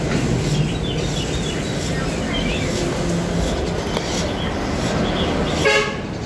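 Steady street traffic noise with a short horn honk near the end.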